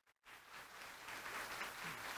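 Faint audience applause, starting a moment in and growing a little louder.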